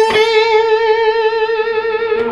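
Gibson SG Special T electric guitar played through a Fender Super-Sonic amp's overdriven gain channel. A single high note is picked near the start and held with vibrato, sustaining for about two seconds.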